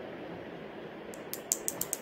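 Small metal safety pins being handled in the fingers: a quick run of about seven light, sharp clicks in the second half.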